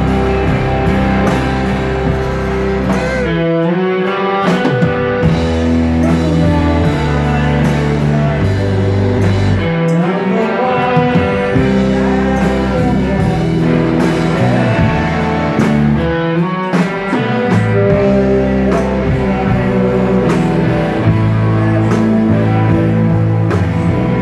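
A rock band playing live: electric guitars, including a Telecaster-style guitar, over a drum kit, loud and steady with a regular beat.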